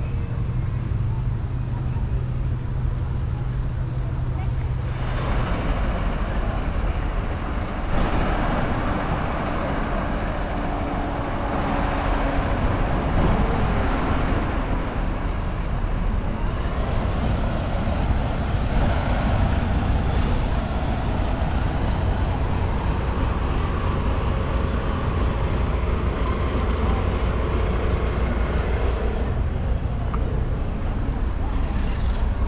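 City street sound of traffic rumbling past, with a bus and people talking nearby. Roughly two-thirds of the way through, a vehicle's air brakes give a short hiss.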